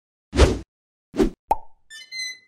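Title-card sound effects: two short noisy hits about a second apart, then a sharp pop, and a bright ringing tone beginning just before the end.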